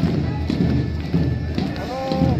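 Parade music with repeated thumping drumbeats and voices mixed in, with a sharp knock right at the start.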